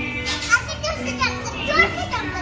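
Young children's high-pitched voices, shouting and calling out at play, with background music, and one short sharp knock about a quarter of the way in.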